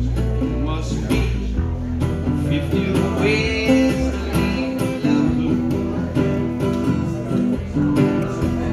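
Acoustic guitar strummed in a steady rhythm, a live instrumental passage with chords ringing on.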